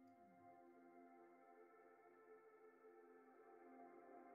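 Faint ambient background music: soft held tones that sustain without any beat.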